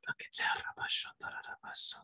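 A man whispering a quick run of syllables under his breath.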